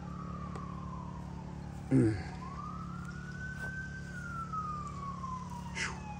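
An emergency-vehicle siren in a slow wail, its pitch falling, then rising over about two seconds and falling again more slowly. Under it runs a steady low hum.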